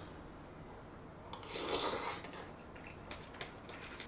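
A person eating rice stew with a spoon from a small bowl. About a second in there is a short noisy scrape-like sound lasting under a second, followed by a few faint small clicks.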